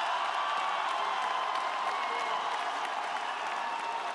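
Large stadium crowd applauding: a steady, dense wash of clapping mixed with crowd voices.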